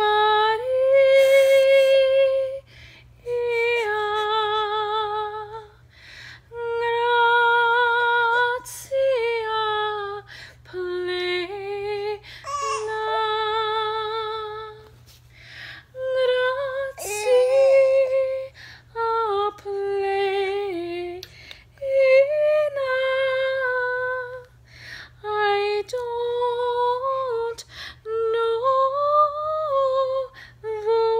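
A woman singing opera-style to a baby, unaccompanied: long held notes with a wide vibrato, in phrases of a few seconds broken by short pauses for breath.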